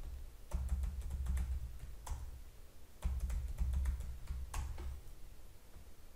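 Typing on a computer keyboard: scattered, irregular keystrokes with pauses between bursts. A low rumble comes and goes underneath twice.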